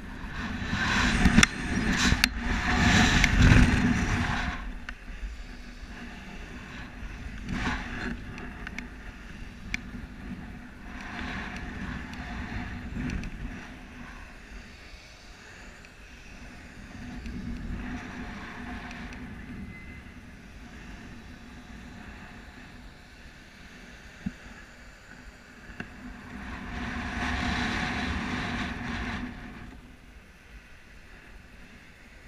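Wind rushing over a helmet-mounted camera's microphone during a rope jump. It is loudest over the first few seconds of the free fall, then swells and fades again every several seconds as the jumper swings on the rope.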